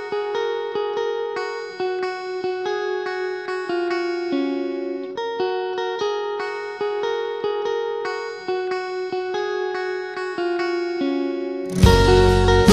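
Song intro: a clean guitar picks a repeating arpeggio figure, about four notes a second. Just before the end the full band crashes in much louder, with bass and drums.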